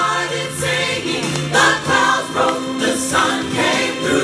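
Gospel choir singing with several amplified voices over a live accompaniment, with long held notes.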